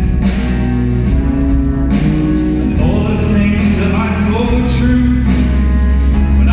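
Live music from a rock band and string orchestra playing together: bowed violins, electric and acoustic guitars holding chords that change every second or two.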